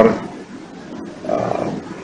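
A man's voice in a pause between sentences: a word trails off, then a short hummed hesitation sound comes about one and a half seconds in, over room tone.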